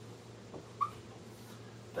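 Dry-erase marker writing on a whiteboard: faint strokes and one short squeak a little under a second in, over a steady low room hum.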